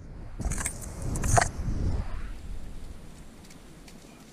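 Metallic jangling with rustling grass in the first second and a half, then fading: pliers and the lure's hooks being worked at the mouth of a landed largemouth bass to unhook it.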